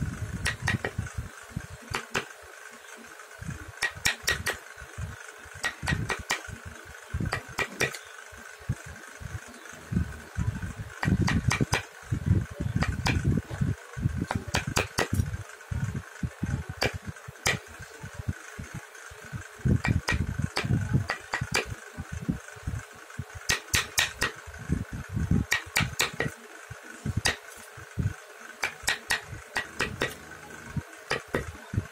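Thin steel hand chisel cutting and scraping into a carved hardwood dome, heard as short irregular clusters of sharp clicks, over a steady hum.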